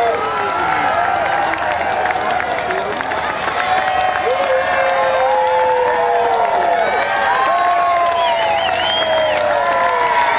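Large street crowd cheering, shouting and clapping, with many voices calling out at once. A shrill wavering note rises above the crowd for about a second near the end.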